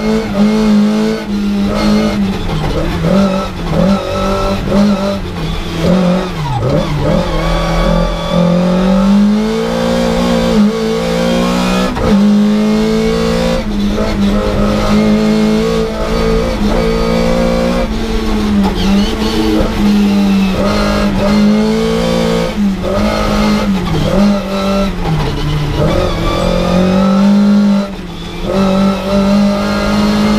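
Lada VFTS race car's fully forged 1.6-litre four-cylinder engine, heard from inside the stripped cockpit, revving hard up and down repeatedly while lapping a track. Brief breaks in the note, the longest near the end, come at gear changes.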